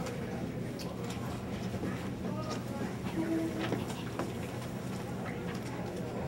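Quiet room tone with a steady low hum, scattered small clicks and rustles, and a brief faint murmur about three seconds in.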